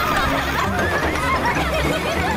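Several high girls' voices laughing together, in overlapping giggles that slide up and down in pitch.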